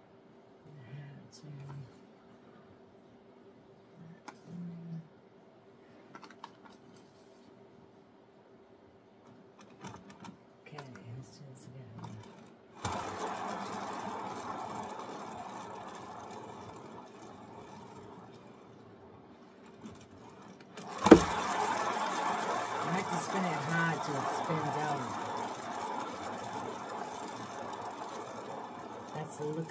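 Hand-spun paint-pouring turntable whirring, the paint flinging off it. It starts suddenly about 13 s in and fades slowly as the turntable slows. A sharp knock about 21 s in as it is spun again, then louder whirring.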